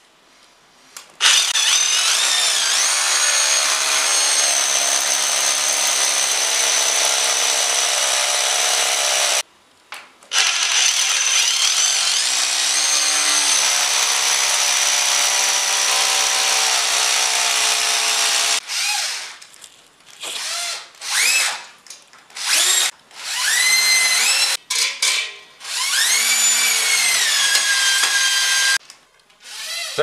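Cordless drill running in two long stretches, its motor whine dipping in pitch and recovering under load, then a string of short trigger bursts, each rising in pitch as the motor spins up. It is reworking the pipe hole bored through a concrete wall, which was hard to drill.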